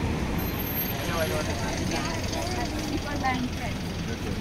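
Steady low rumble of road traffic passing close by, with indistinct voices of passers-by talking over it from about a second in.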